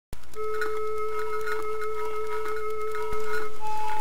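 Flute playing one long held note, then moving to a higher held note near the end, with faint light ticks scattered throughout.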